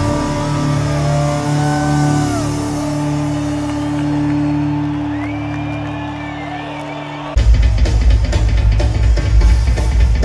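Live rock band ending a song: a sustained keyboard chord with electric guitar notes bending over it, slowly fading. About seven seconds in, it cuts abruptly to a much louder low rumble with crackle.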